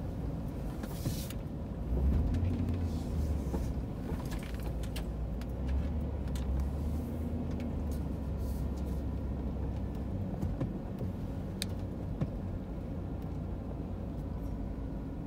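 Car heard from inside the cabin while driving slowly: a steady low engine and road rumble that swells about two seconds in, with a few faint clicks.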